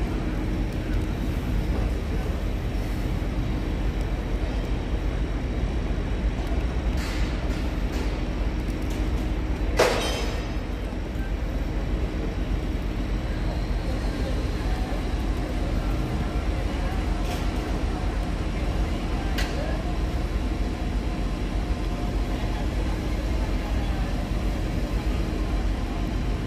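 Steady low rumble and hum of construction-site machinery, with one sharp metallic bang about ten seconds in and a few faint knocks.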